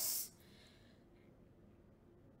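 A woman's word ends in a short hissing 's' in the first quarter second, then near silence: faint room tone.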